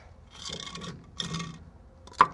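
Wooden cribbing wedges being worked out from under a lifted steel container: wood scraping and rubbing in two strokes.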